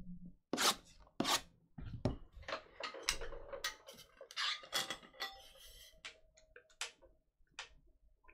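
Cardboard trading-card boxes being handled and set down on a tabletop: a quick string of light taps, clicks and rustles, thinning out to occasional ticks after about five seconds.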